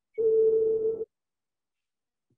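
A single steady tone from the teaser video's soundtrack, played over the screen share, held for about a second and then cut off abruptly as the playback stalls.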